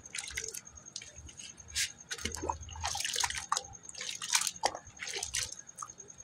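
Hands squeezing and breaking up a wet lump of geru (red ochre) and sand in a bucket of water: irregular splashes, drips and wet squelches.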